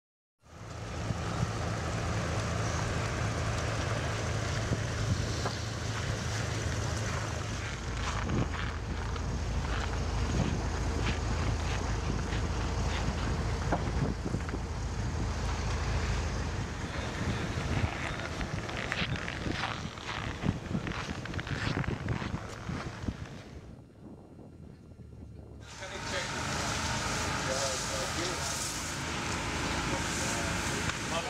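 Outdoor location sound with wind on the microphone. A steady low rumble for the first several seconds gives way to scattered clicks and knocks, and indistinct voices come in near the end.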